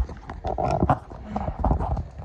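Handling noise: a run of irregular knocks and rubbing as a handheld phone camera is moved about against cloth.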